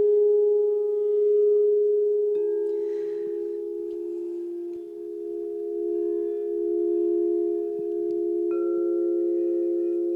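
Crystal singing bowls rung by mallets circling their rims: several long sustained tones overlap and swell slowly with a wavering beat. A lower bowl joins about two seconds in and a higher one near the end.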